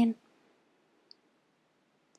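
The tail of a spoken breathing cue, then near silence: room tone with one faint, tiny click about a second in.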